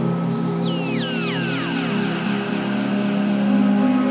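Goa trance electronic music: held low synth chords, with a cascade of falling synth glides echoing one after another from high to mid pitch in the first two seconds.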